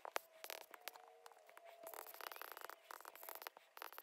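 Faint stylus taps and scratches on a tablet screen while handwriting, as a series of short, irregular ticks.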